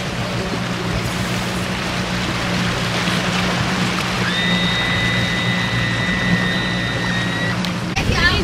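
Small boat's engine running steadily with a low hum under way, over wind and rushing water. About halfway through, a high steady whistle-like tone sounds for about three seconds.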